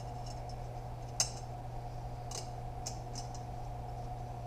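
Light metallic clicks and ticks from a 68RFE transmission's planetary gear set and drum being fitted back onto the output shaft by hand, the sharpest click about a second in, over a steady low hum.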